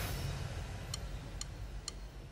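A fading chord dies away, then three short, evenly spaced ticks sound about half a second apart: a count-in setting the band's tempo before the song starts.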